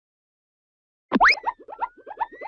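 Cartoon sound effect, silent for about a second, then a quick upward glide followed by a fast run of short rising chirps over a thin whistle that slowly climbs in pitch.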